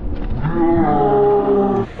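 A man's long, drawn-out vocal cry held on one pitch, starting about half a second in and lasting about a second and a half before dipping and stopping.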